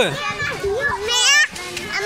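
Children's voices at play: a child calling "mehr", then a very high-pitched child's shout about a second in.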